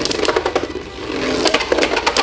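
Two Beyblade Burst spinning tops whirring in a plastic stadium, clacking against each other and the stadium wall in a rapid, irregular run of sharp clicks, with background music underneath.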